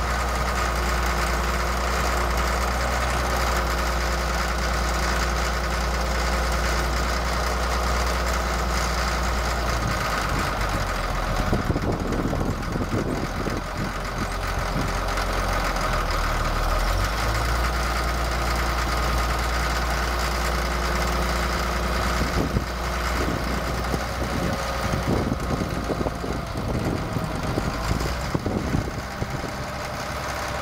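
Caterpillar 3306 six-cylinder diesel of a 1979 Caterpillar 12G motor grader running steadily at idle, with a steady whine above the engine note. About a third of the way in, and again through the last third, the sound turns rough and uneven while the moldboard is being moved.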